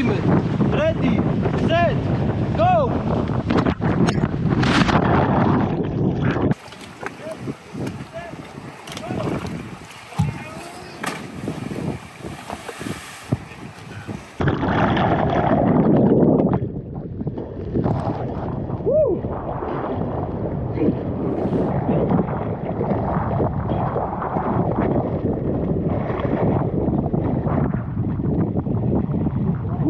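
Wind buffeting the microphone over open sea water around a boat, with a voice in the first few seconds. About six seconds in it drops to a quieter stretch, and the loud wind and water noise returns about halfway through.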